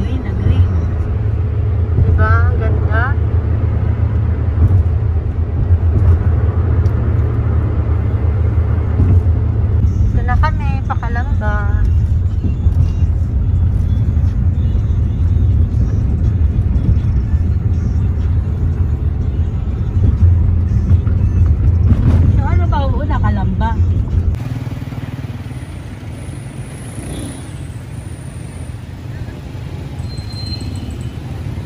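Steady low road and engine rumble inside a car's cabin at expressway speed. It cuts off abruptly about 24 seconds in, giving way to a much quieter ambience.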